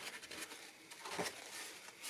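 Faint rubbing of a small rag wiping fish-glue squeeze-out off a glued crack in a mahogany guitar side between spool clamps, with a slightly louder scuff a little past a second in.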